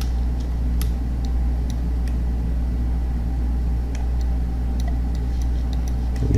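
Steady low hum in the recording, with a handful of faint, scattered clicks of a computer mouse as the 3D viewport is navigated.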